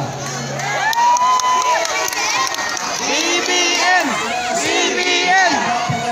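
Crowd cheering and shouting, many voices overlapping, a good number of them high-pitched.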